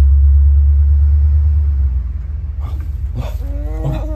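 A loud low rumble, heaviest over the first two seconds and then easing off. Near the end a baby's cooing, squealing vocal sounds come in.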